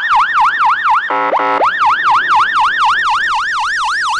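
Emergency vehicle siren on a fast yelp, its pitch sweeping up and down about four times a second. About a second in it breaks for a half-second steady horn blast, then resumes.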